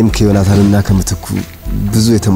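A man speaking in a low voice, with a soft music score underneath.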